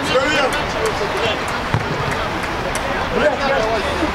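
Players shouting across a small outdoor football pitch, with a single dull thud of the ball being struck a little under halfway through.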